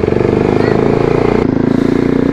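Sport motorcycle's engine running as the bike is ridden along a street, a steady pulsing note that shifts pitch about a second and a half in.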